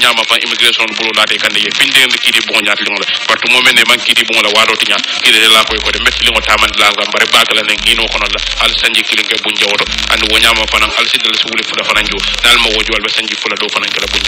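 Only speech: continuous talk in the manner of a radio news broadcast, in a language the recogniser did not write down.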